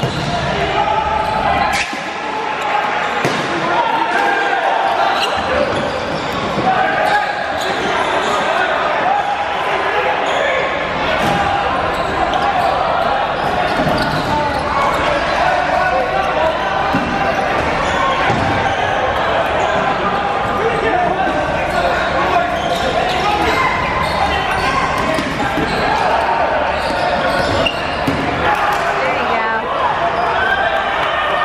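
Dodgeball players shouting and calling out over one another, with dodgeballs repeatedly bouncing on the hardwood gym floor and hitting players, all echoing in a large hall.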